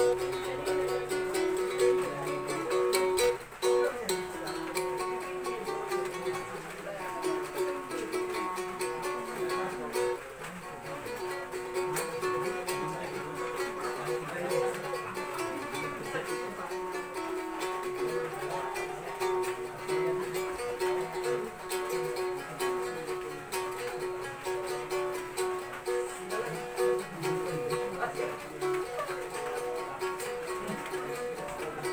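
Two-string Philippine boat lute (kudyapi) plucked solo in a quick, repeating melody over a steady held drone note.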